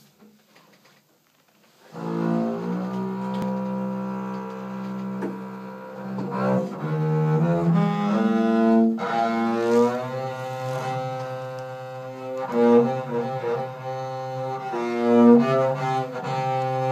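Upright double bass played with a bow, long sustained notes moving in a slow line, with piano alongside; the music starts about two seconds in after a brief quiet moment.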